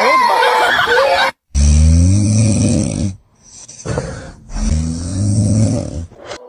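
A man snoring loudly, starting about a second and a half in: two long, deep snores with a fainter breath between them.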